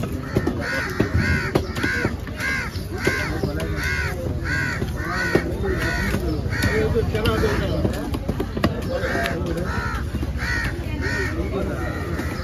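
Crows cawing over and over, about two short caws a second, with a brief pause around eight seconds in.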